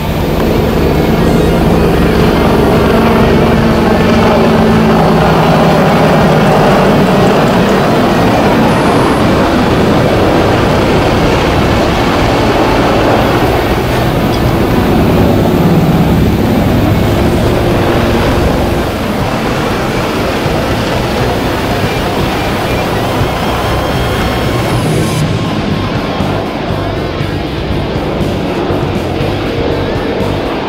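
AH-64 Apache attack helicopters flying overhead: a steady rapid beating of the rotor blades over turbine noise, slightly quieter in the second half. Rock background music runs underneath.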